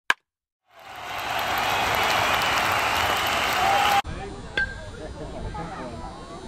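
A loud, even rushing noise fades in over about a second, holds, and cuts off abruptly about four seconds in. It is followed by quieter open-air ambience with one sharp knock.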